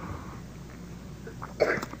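Faint room noise during a pause in a man's lecture. About one and a half seconds in comes a short, cough-like burst from a person.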